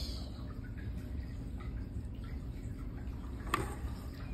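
Quiet steady room noise with a few faint clicks and one sharper click near the end.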